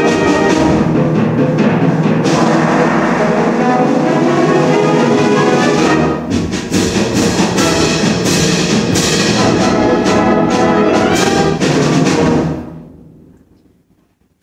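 Secondary-school concert band playing the closing bars of its piece, brass and timpani together, with a run of sharp accented hits from about six seconds in. The final chord is cut off about a second and a half before the end and rings away into the hall.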